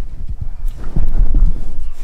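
Handling noise from a handheld camera being carried and moved about: an irregular run of low knocks and rumble.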